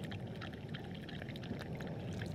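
Water trickling from a glass jar into a cupped hand while a dog laps it up, a quiet run of small wet clicks and splashes.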